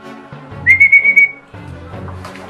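A single short whistle blast: one high steady tone with a fluttering trill, lasting about three-quarters of a second, loud over background music.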